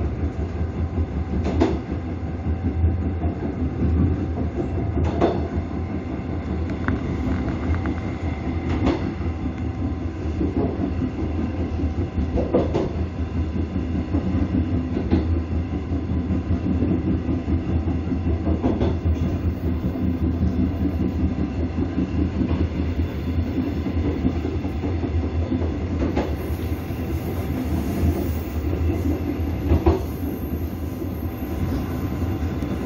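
Train running along the track, heard from its rear end: a steady rumble and hum, with a wheel knock every few seconds as the wheels pass over rail joints.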